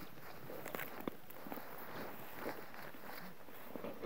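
Footsteps of a person walking through grass, soft irregular steps with rustling.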